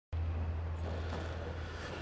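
A steady low hum that fades slightly towards the end.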